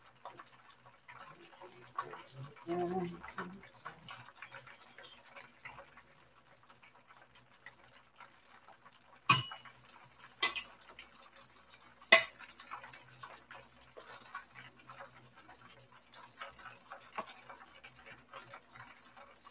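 Metal tongs working in a stainless steel mixing bowl, with light scraping and handling sounds and three sharp metal clanks close together around the middle.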